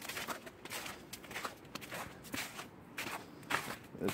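Footsteps in snow: someone walking at a steady pace across snowy ground, a few steps a second.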